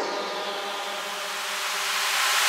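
Electronic dance music in a breakdown: a held synth chord under a swoosh that falls in pitch, then a rising noise sweep that swells near the end, building toward the drop.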